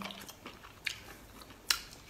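Chewing cooked octopus, with a few short sharp mouth clicks; the loudest comes near the end.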